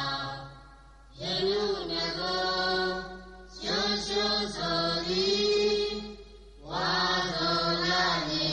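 Buddhist devotional chanting by male voices, in long phrases held on a steady pitch. There are three phrases, with a short pause for breath between each.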